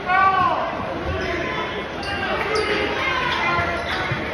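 Basketball game noise in a large gym: the ball bouncing on the hardwood court in a few thumps, over crowd chatter, with a voice calling out at the start.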